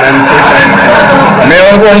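Many men's voices talking and shouting over one another at once, a loud, unbroken din of overlapping voices, with one voice coming through clearer near the end.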